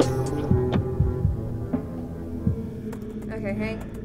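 Dark horror film score: a sustained drone of held tones with low throbbing thumps under it, fading about three seconds in as a short stretch of voice comes in.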